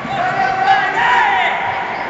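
One long high-pitched shout, lifting in pitch about a second in, over the noise of a crowd in a hall.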